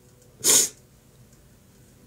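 A single short, sharp burst of breath from a woman about half a second in, in a pause between her sentences.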